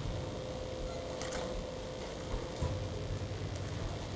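Room tone: steady hiss with a faint steady hum that stops shortly before the end, and a few faint clicks of typing on a keyboard.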